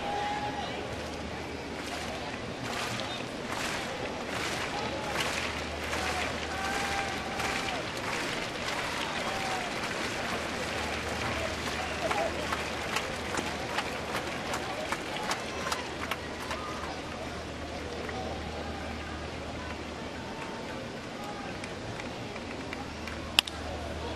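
Ballpark crowd at a baseball game: a steady hum of crowd chatter with scattered shouts and clapping, then near the end a single sharp crack of the bat hitting the ball off the end of the bat.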